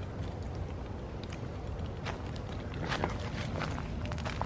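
Footsteps on dry grass and sandy ground: soft scattered crunches, a few louder ones about three seconds in, over a low steady rumble.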